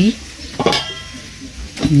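Stainless steel bowl and spoon clinking as food is handled, with a short ringing clink less than a second in.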